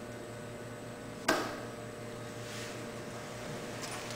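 Quiet room with a steady low hum. About a second in comes one sharp thump, followed by faint rustling as a person gets up off a sofa.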